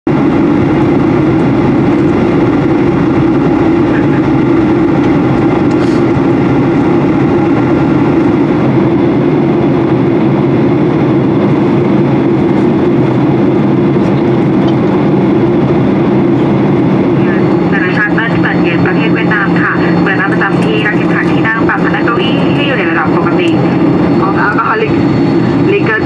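Steady cabin drone of a Boeing 737-800 in flight, the hum of its CFM56-7B engines and the airflow heard from a window seat over the wing. About two-thirds of the way through, a cabin announcement over the PA begins on top of the drone.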